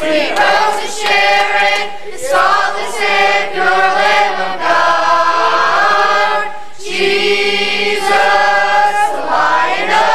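Youth choir of boys' and girls' voices singing a gospel song in long, connected phrases, with brief breaths between lines.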